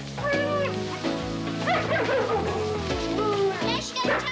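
A border collie whining and yelping in short cries that rise and fall in pitch, over background music with steady held notes.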